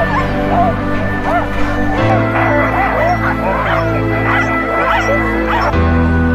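A harnessed sled dog team of huskies yipping, whining and howling all at once, many voices overlapping, growing busier about two seconds in. Background music plays underneath.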